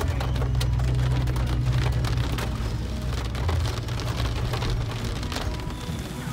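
Heavy rain pattering on a car's windshield and roof, heard from inside the cabin as many quick irregular ticks over a low steady rumble of the car.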